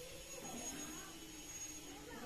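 Faint, distant human voices over quiet open-air background noise, with a thin steady high-pitched tone.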